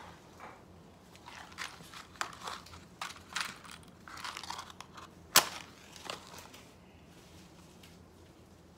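A box of wooden matches being handled and opened, with rustling and small clicks, then a single sharp, loud strike about halfway through as a match is struck to light an incense cone.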